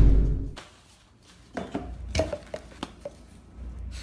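A loud crash-like hit fading out, then a run of short clinks and knocks of a jar and utensils on a kitchen counter.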